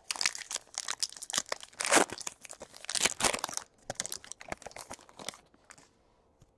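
Trading cards being slid and shuffled through the hands: a quick run of dry papery rasps and crinkles of card stock against card stock, loudest about two and three seconds in, stopping shortly before the end.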